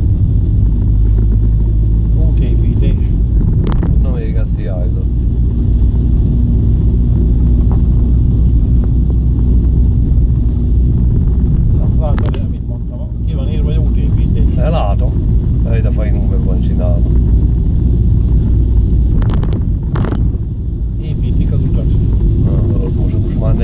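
Steady low rumble of a car's engine and tyres heard from inside the cabin while driving on a rough road.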